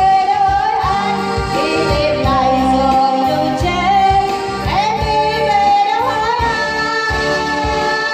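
A woman singing live through a microphone, holding long notes with vibrato, accompanied by a Yamaha electronic keyboard with a steady beat.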